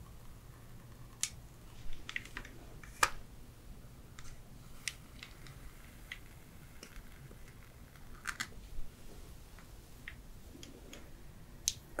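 Flat iron (hair straightener) being clamped and slid along hair close to the microphone: faint, irregular clicks and clacks of the plates and handle, the sharpest about three seconds in.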